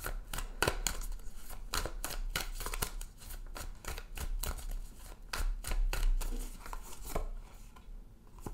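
Oracle cards being shuffled by hand: a run of quick, irregular card flicks and snaps, thinning out near the end.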